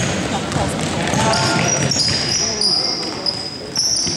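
Basketball being dribbled on a hardwood gym floor, with sneakers squeaking repeatedly during the second half as players run to the basket, echoing in the gym.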